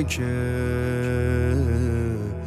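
A singer holds one long note of a devotional chant over a steady low drone, the pitch wavering briefly near the end.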